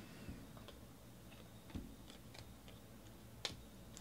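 Faint, scattered clicks and soft taps of a stack of football trading cards being flipped through in the hands.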